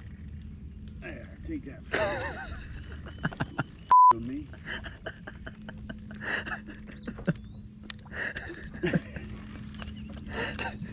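A single short, loud steady beep about four seconds in, a censor bleep dubbed over one word, amid people talking.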